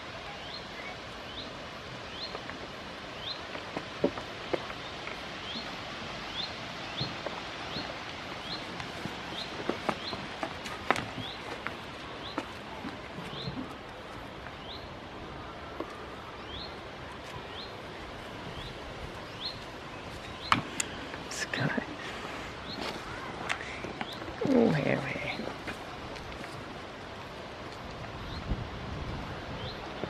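A small bird repeating a short, high, rising chirp a little more than once a second, over outdoor background noise with scattered light knocks and rustles. A single louder call cuts in about three-quarters of the way through.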